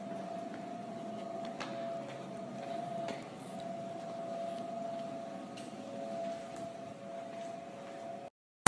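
A steady hum with a faint held tone, and a few soft clicks scattered through it.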